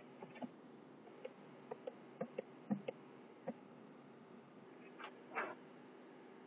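Faint, scattered light clicks and taps, about a dozen over the first three and a half seconds, then a short rustle or scrape near the end, over a faint steady hum.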